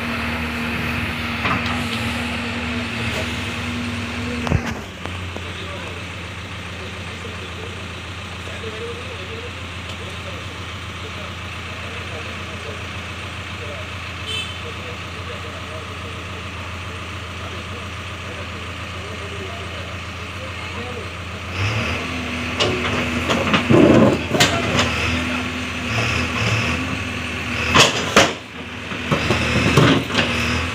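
JCB backhoe loader's diesel engine running at raised revs while the bucket works. About four and a half seconds in it drops to a lower steady idle. Near the end it revs up again under load, with a few sharp knocks.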